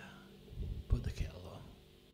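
A quiet, short whispered voice, starting about half a second in.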